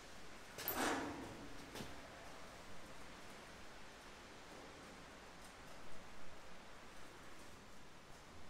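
Quiet handling noises in a small room: a brief rustle about a second in and a light tap soon after, then faint room tone while a flat-bar template is held against the trailer frame.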